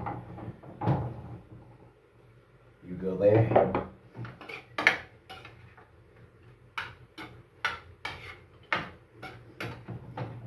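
Metal spatula scraping and knocking against a frying pan as meat is stirred and turned, in a run of short sharp strokes, about one or two a second, from about four seconds in. A brief vocal sound from the man comes just before the strokes start.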